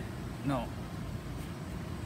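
A single short spoken word, then steady background noise with no clear source.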